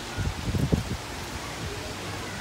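Low, uneven buffeting rumble on the microphone for about the first second, then a steady faint hiss.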